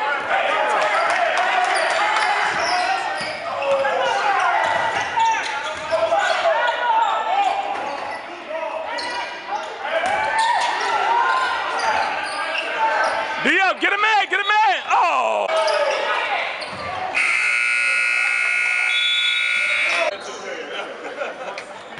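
Basketball game sounds echoing in a gym: a ball dribbled on the hardwood court, with players' and spectators' voices. Near the end the scoreboard buzzer sounds one long steady buzz, about three seconds long.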